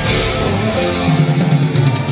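Live rock band playing at full volume: electric guitars over drums and keyboards, with heavier low notes coming in about a second in.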